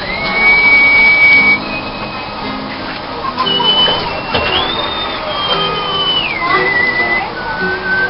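Two acoustic guitars playing live. A high, thin tone runs over the music, holding steady, then stepping and sliding up and down in pitch.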